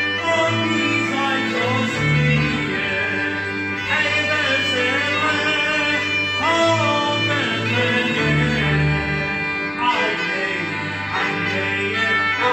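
Moravian Wallachian folk music: fiddles playing a folk song while a man sings with them, over a bass line that shifts every couple of seconds.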